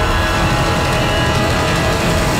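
Tense, dramatic background music: sustained held tones over a heavy, continuous low rumble.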